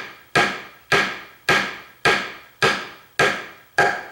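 Light, even hammer taps driving a brass stoptail bridge stud well into a guitar body: seven strikes about two a second, each with a short ring. Kept light so the well goes in straight.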